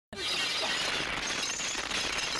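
Film soundtrack of glass shattering and light bulbs bursting in one long, continuous cascade, starting suddenly just after a brief silence.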